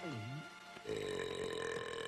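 Cartoon manticore belching: a long, sustained, pitched belch that starts a little under a second in, over orchestral underscore.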